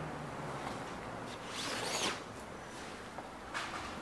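A classical guitar being pulled out of a padded fabric gig bag: fabric rubbing and handling noise, with a short zip-like sweep about two seconds in.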